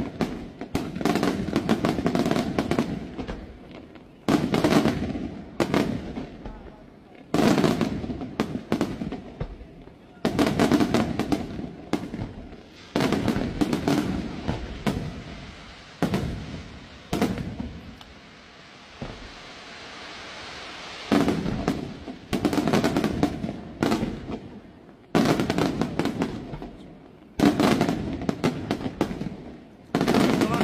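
Aerial firework shells bursting in quick succession, a sharp bang every one to three seconds, each dying away into crackle and echo. A quieter stretch of steady hiss comes about two-thirds of the way through, before the bursts pick up again.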